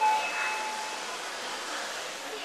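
Elevator arrival chime: a single ding that rings and fades over about a second and a half.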